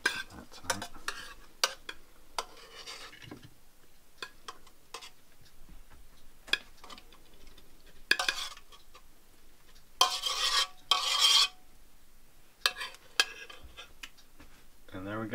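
Utensil clinking and scraping against a stainless steel pot as cooked seed grain is scooped out onto plates. Scattered light clinks, then longer scrapes about eight seconds in and again around ten to eleven seconds.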